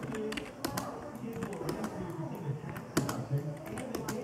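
Typing on a computer keyboard: scattered, irregular key clicks over muffled talk-radio speech.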